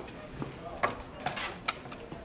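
A few sharp, light clicks and taps from hands on a lab microscope and the bench around it, as a microscope whose light won't come on is checked. One comes about a second in and a quick cluster follows near the end, under faint classroom voices.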